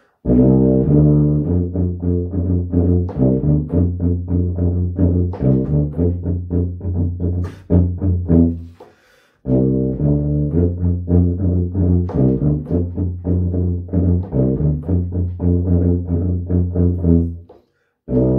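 Tuba playing a repetitive tune in quick, short repeated notes, with a brief pause about nine seconds in.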